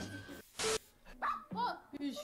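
A short burst of hiss about half a second in, then a small dog barking in short yips a few times.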